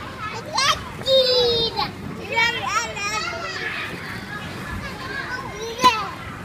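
Young children's voices: chatter and a long high-pitched squeal about a second in. A single sharp knock just before the end.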